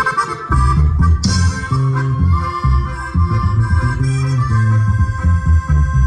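Live grupera band playing: a reedy lead melody of held notes, with a bass line that comes in about half a second in.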